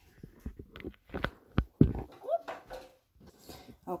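Hands working spaghetti coated in a creamy sauce in a glass baking dish: a string of separate wet slaps and knocks, the loudest a little before two seconds in. A short rising whine-like voice sound follows a moment later.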